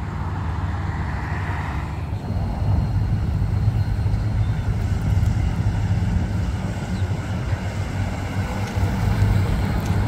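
Cars driving past on a street: a steady low engine rumble that grows stronger a couple of seconds in, as a Ford Mainline sedan drives by. Tyre hiss from a passing car is heard in the first two seconds.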